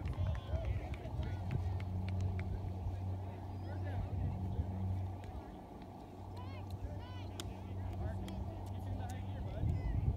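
Indistinct distant voices and calls of players and people around an open playing field, over a low steady hum that fades briefly about halfway through.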